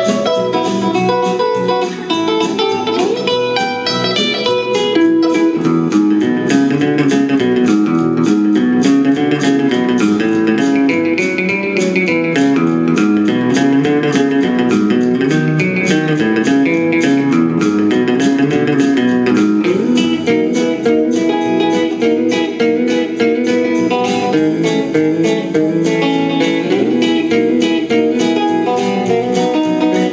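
1966 Gretsch 6120 hollow-body electric guitar played through a Fender tube amp in an uptempo instrumental boogie. A repeating low bass figure runs under picked treble licks, in a steady rhythm.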